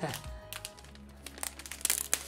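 Plastic packaging crinkling as a large display is handled and unwrapped, the crackles coming thicker in the second half.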